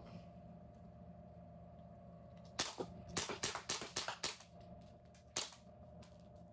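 ASG Cobray Ingram M11 CO2 BB air pistol firing semi-automatically: a quick string of about eight sharp shots starting about two and a half seconds in, then one more shot about a second later.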